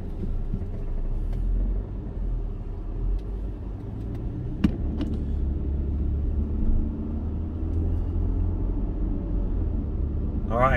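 Car interior road noise while driving slowly: a steady low rumble of engine and tyres heard from inside the cabin, with a couple of brief sharp clicks about halfway through.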